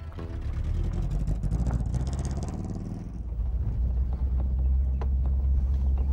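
Car engine running as the car drives, settling into a steady low rumble from about three seconds in.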